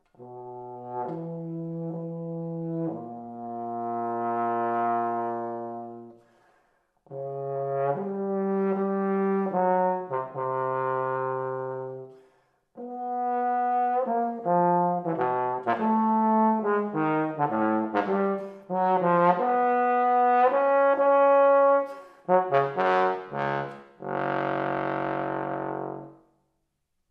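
Bass trombone played solo and unaccompanied: slow phrases of long, swelling held notes with short breaks for breath, then a quicker run of shorter notes, ending on a loud, bright held low note.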